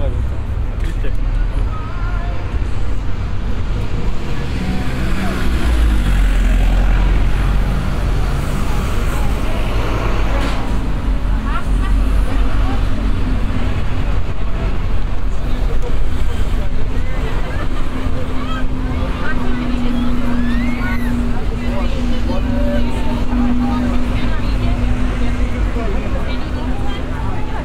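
Busy street and outdoor-market ambience: road traffic with a double-decker bus passing near the start, then voices of people chatting around food stalls over a steady low hum.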